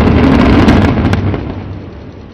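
Controlled-demolition implosion of a 16-storey apartment tower: a rapid run of sharp cracks from the explosive charges over a heavy low rumble of the collapsing building, dying away in the second half.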